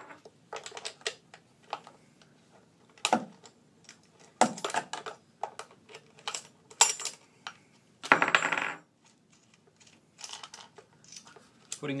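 Irregular metal clicks and clinks of a T socket wrench working the lock nuts of a chainsaw's bar and chain cover, and of the nuts and tool being handled and set down, with a longer metallic rattle about eight seconds in.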